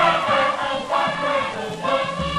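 Balinese Djanger song: a chorus of voices singing together in short, repeated phrases. The sound is that of a pre-1930 recording, with its treble cut off.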